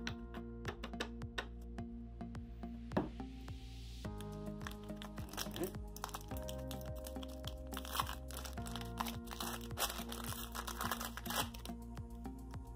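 Soft background music of held chords that change every couple of seconds, with many light clicks and rustles from paper trading cards being handled and set down on a table.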